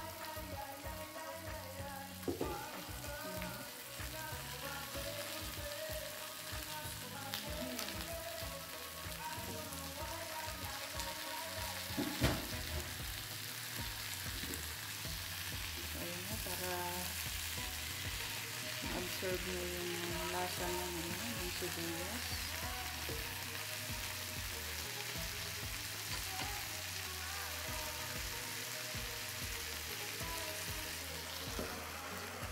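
Fish, onion and tomato frying in oil in a nonstick wok, sizzling steadily, as a wooden spatula stirs and turns them. There are two sharp knocks of the spatula against the pan, about two seconds in and again near the middle.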